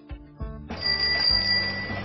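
Bicycle bell ringing in a continuous trill, starting about three-quarters of a second in, over light background music.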